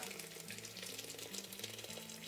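Hot water pouring in a steady stream from a stainless steel kettle into a teapot's metal infuser basket, filling the pot.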